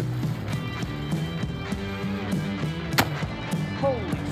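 Background music, with a single rifle shot about three seconds in from a single-shot, hammer-fired breech-loading rifle.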